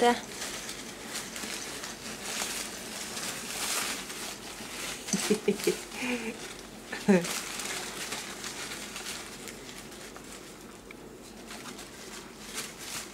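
Paper rustling and crinkling as a baby grips and moves a crumpled sheet of it, with a few short baby coos about five to seven seconds in.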